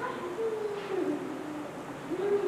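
A soft, high-pitched human voice drawn out in long, slowly gliding tones, held for most of a second before falling in pitch.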